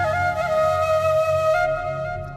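Background music: a slow melody of long held notes, each stepping to a new pitch, over a low sustained accompaniment.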